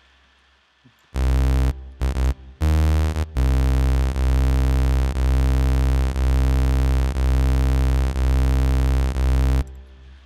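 Low, buzzy synthesized bass tone from an OSCiLLOT modular synth patch, played as a few short notes about a second in and then held for about six seconds. The held tone has a weird pulsy wobble about once a second, which comes from the patch's ring modulator left at a tiny rate of about one hertz.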